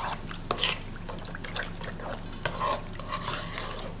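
A metal spoon stirring a runny yeast batter with lumps of scalded dough in an enamel bowl: wet sloshing with irregular clicks of the spoon against the bowl.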